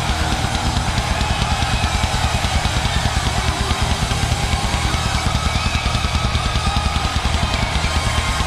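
Heavy metal band playing live: a fast, even bass drum beat with cymbals under distorted electric guitar.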